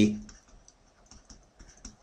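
Faint, scattered taps and clicks of a stylus on a pen tablet as a word is handwritten.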